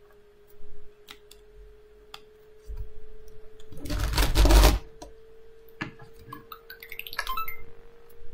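A small LEGO plastic robot being grabbed and lifted off a desk by hand: scattered light plastic clicks and knocks, with one loud rustling scrape about four seconds in as it is picked up.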